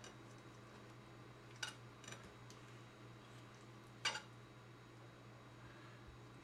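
A few faint clicks of a knife and fork against a plate while cutting into a roasted chicken leg quarter, the loudest about four seconds in, over a low steady hum.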